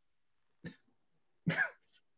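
A person briefly clearing their throat about one and a half seconds in, after a fainter short sound a little earlier; otherwise near silence.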